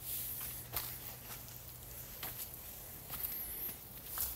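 Faint footsteps on wood-chip mulch, a few soft scattered steps.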